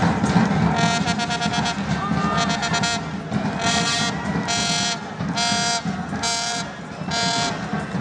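Stadium crowd noise with a horn in the stands blowing a string of short blasts on one pitch. The first two blasts flutter; the last five are even and come a little under a second apart.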